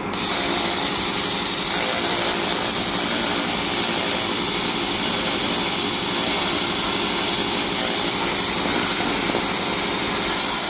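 Everlast RedSabre 301 pulsed laser cleaner ablating the surface of a steel plate: a loud, steady hiss that sets in right at the start, over a steady machine hum.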